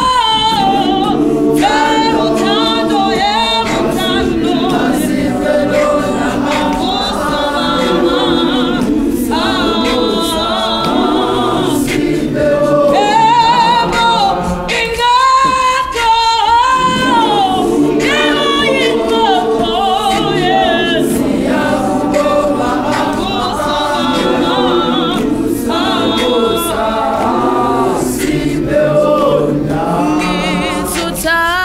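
Large youth gospel choir singing a cappella in close harmony, with a lead voice gliding above the held choir parts. The lower choir parts drop out briefly about halfway through.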